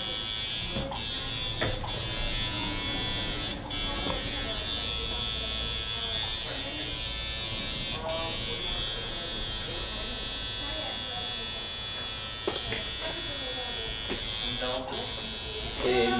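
Electric tattoo machine buzzing steadily while tattooing, cutting out for a split second several times.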